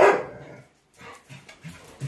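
A dog barks once right at the start, followed by a few faint short sounds.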